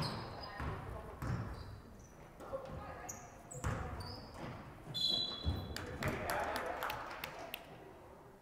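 A basketball bouncing on a hardwood gym floor, a thud every half second or so, with sneakers squeaking during play. It rings in the large gym hall, with indistinct voices underneath.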